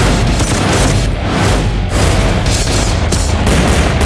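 Loud, dense action-trailer music mixed with booms and rapid bursts of gunfire sound effects.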